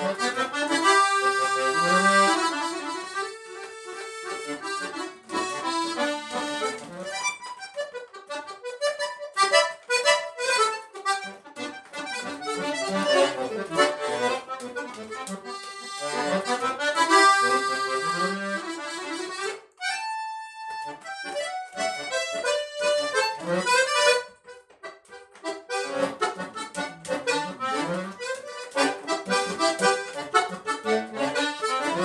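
Solo button accordion playing a chamamé tune in phrases, with a short break and a held chord about twenty seconds in.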